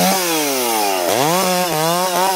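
Stihl 660 two-stroke chainsaw cutting through a eucalyptus log: the engine speed sinks steadily for about a second, then revs sharply back up and holds at high revs with a few brief dips.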